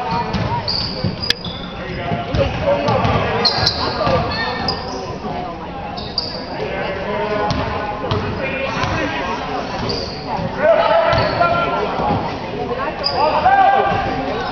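Basketball game on a hardwood gym court: the ball bouncing as it is dribbled, shoes squeaking in short high chirps, and spectators' voices, all echoing in the hall.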